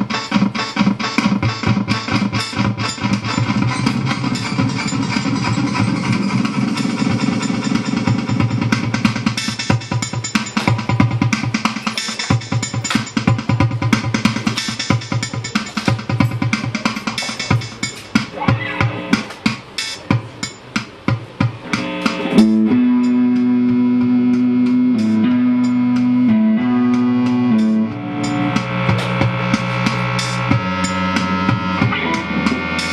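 Live band music from electric guitars and a Roland synthesizer over a steady, busy beat. About two-thirds of the way in, the beat drops away and sustained notes step between a few pitches.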